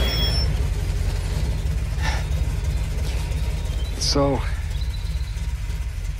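Convertible car's engine idling with a steady low rumble. A brief vocal exclamation comes about four seconds in.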